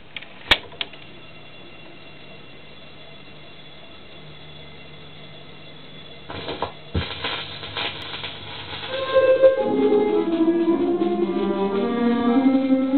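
A sharp click and a second, smaller one as the turntable's control is worked, then a steady low hum. About six seconds in comes the crackle of a corundum-tipped stylus in the groove of a 78 rpm shellac record, with a thump. From about nine and a half seconds in the record's music starts playing.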